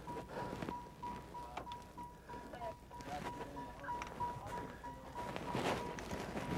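A steady run of short electronic beeps at one pitch, with rustling and small knocks of movement underneath.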